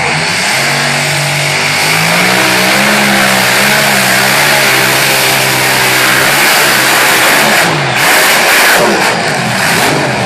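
Modified pulling tractor's engine under full power as it drags the sled, its pitch climbing and then holding over a loud roar. About eight seconds in the sound breaks into a harsher burst and the engine pitch falls away as the run ends in the crash.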